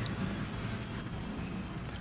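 Steady low background hum of room tone, with no distinct event.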